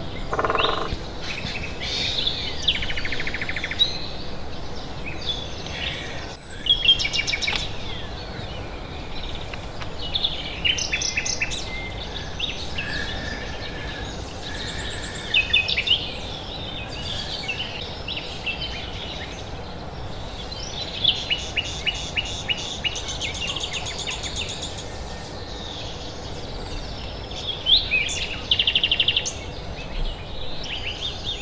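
Wild birds singing and calling outdoors: a mix of chirps, short trills and whistles from several birds, some of them overlapping, over a steady background hiss.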